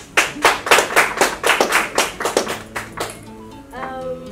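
Hands clapping in a quick, even rhythm, about four claps a second, stopping about three seconds in. Music with plucked-string notes starts near the end.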